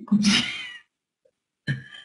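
A woman's voice over an internet call: one short, drawn-out vocal sound lasting under a second. Her speech starts again near the end.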